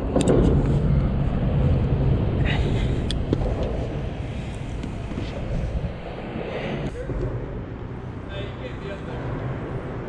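Steady low rumble of road traffic on the bridge mixed with wind noise on the camera microphone, with a few sharp knocks from fishing gear being handled on the concrete.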